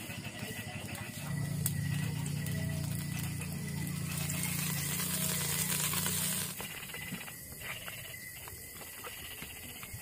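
Cooking oil poured in a thin stream into a large soot-blackened pot. The steady pouring sound starts about a second in, gains a hiss partway through, and stops after about five seconds.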